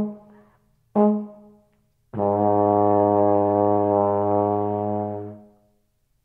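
Euphonium closing a solo piece: a short note ending, a single sharply attacked note about a second in, then one long low note held for about three seconds that fades away.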